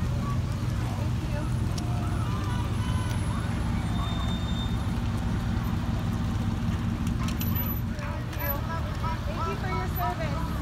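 Parade vehicles' engines running as they roll slowly past, a steady low hum, with indistinct voices of onlookers over it.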